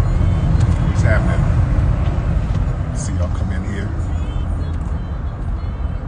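Steady low rumble of a moving car heard from inside the cabin, with a few brief snatches of a man's voice over it.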